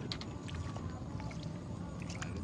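Water splashing as a hooked tilapia (mujair) thrashes at the surface while being played on the line, a few short sharp splashes over a steady low rumble.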